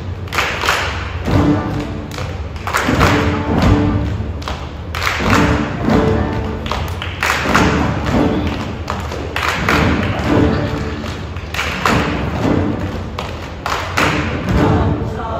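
A school chorus singing with piano, the song carried by repeated loud thumps that recur about once a second in a rhythmic pattern.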